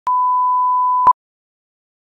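Steady electronic test tone of the kind played with colour bars, held for about a second and ending in a short beep.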